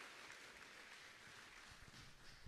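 Faint, steady applause from a church congregation clapping hands, easing off near the end.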